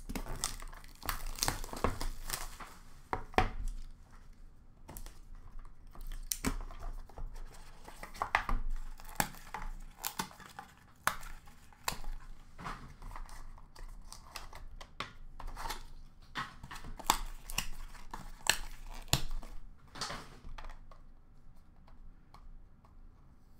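Wrapping and packaging of a Leaf In The Game Used hockey card box crinkling and tearing as it is opened, with irregular sharp clicks and taps of cards and plastic card holders being handled.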